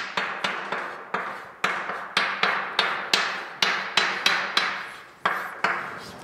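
Chalk knocking and scraping on a blackboard as a formula is written out: quick, irregular sharp taps, about four a second, with a short pause near the end.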